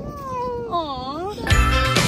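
A toddler's drawn-out wordless wails: one falling in pitch, then a shorter one that dips and rises again. Background music starts suddenly about one and a half seconds in.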